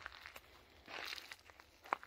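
Faint rustling of a person moving on the forest floor, with a brief crunch about halfway and one sharp click near the end.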